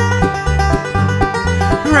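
Bluegrass band playing an instrumental break between verses: fast banjo picking with guitar over a steady walking bass line, the lead voice coming back in at the very end.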